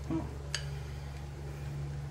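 Pancake batter being scraped from a glass bowl into a frying pan with a silicone spatula: quiet, with one light click about half a second in, over a steady low hum.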